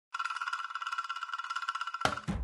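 A high, bell-like tone trilling rapidly at about a dozen pulses a second on one steady pitch. It starts a moment in, as the opening sound of the film's title sequence.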